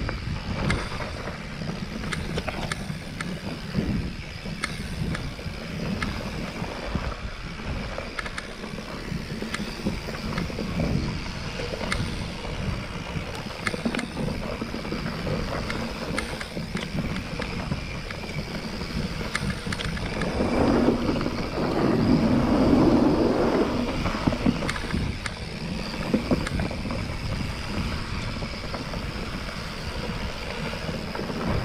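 Mountain bike rolling down a dirt singletrack: a steady rumble of tyres and wind on the microphone, with frequent short clicks and rattles from the bike over bumps. About two-thirds of the way through, a rougher, louder rush of noise lasts a few seconds.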